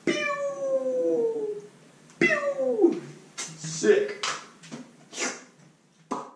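A cat meowing twice, with a long slowly falling call and then a shorter call that drops steeply in pitch. Several short noisy sounds follow.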